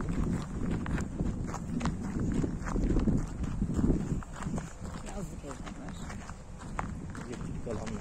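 Footsteps on a dirt and gravel path at a walking pace, short crunching clicks over a low rumble that swells around the middle.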